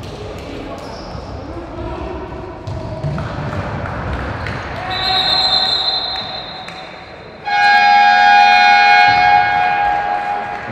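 Futsal play in a reverberant sports hall: ball knocks and shouting voices, then a steady high whistle tone about five seconds in and, about seven and a half seconds in, a louder steady signal blast lasting about two seconds as play stops with players down on the court.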